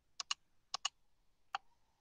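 Computer mouse button clicking: five short, faint clicks in two quick pairs and a single one near the end, as the zoom-in button is pressed.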